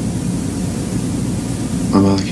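Steady hiss with a low hum underneath: the worn soundtrack of an old 1960s black-and-white film, heard in a pause between words.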